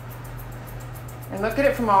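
Grooming shears snipping lightly and repeatedly in a dog's curly coat, over a steady low hum; a woman's voice comes in for the last part.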